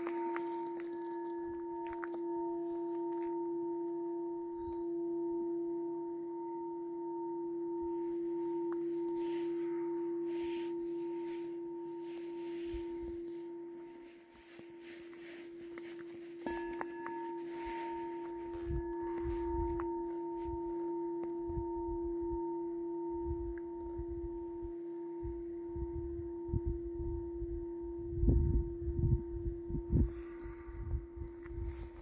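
Quartz crystal singing bowl sung with a wand around its rim: one steady, sustained pure tone with a higher overtone that pulses. About halfway through the tone dies away, then a light tap starts it again and it is sung back up. Low rumbling noise comes and goes in the second half.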